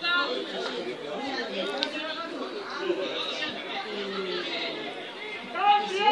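Several voices chattering over one another, with a loud shout at the start and another near the end.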